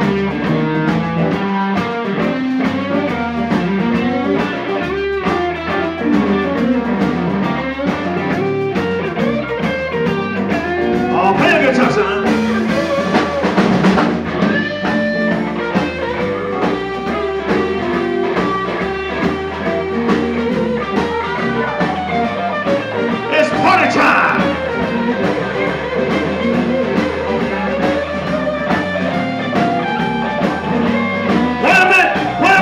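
Live blues band playing an instrumental break, with an electric guitar soloing over the band and bending notes, most plainly about a third of the way in and again past the middle.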